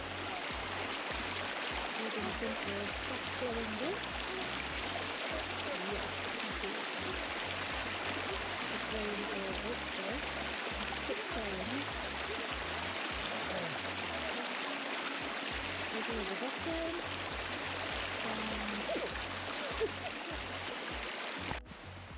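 Shallow stream running fast over rock: a steady rush of water that stops abruptly near the end.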